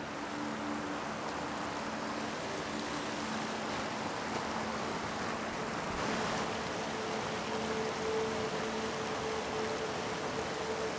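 Steady rush of creek water spilling over a concrete slab bridge, with a faint steady hum underneath.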